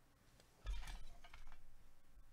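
Handling noise from objects being moved: a low thump just over half a second in, then a quick run of light clicks and clinks over about a second.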